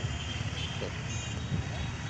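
A steady low outdoor rumble fills a pause in speech, with a faint voice heard briefly about a second in.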